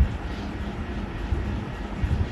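Low, steady background rumble with no speech, like room noise or a distant engine.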